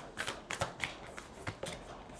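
A deck of oracle cards being shuffled by hand: a quiet run of short, irregular card flicks and taps.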